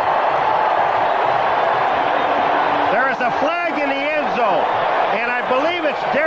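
Steady noise from a large football stadium crowd. From about halfway through, a man's voice talks over it.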